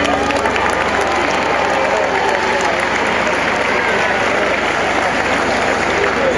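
A large crowd applauding steadily, with voices and shouts mixed into the clapping.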